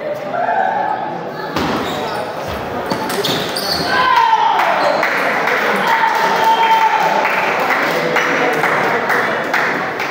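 Table tennis rally: the ball clicks against the bats and the table several times in the first few seconds. Voices rise in the hall once the point ends.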